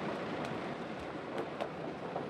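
Steady outdoor background noise, an even hiss with no clear single source, with a few faint clicks.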